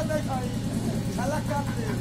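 A few quiet spoken words over a stage PA, with a steady low hum underneath.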